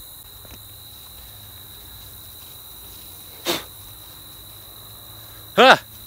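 Crickets trilling steadily on one high note, with a single short, sharp sound about three and a half seconds in.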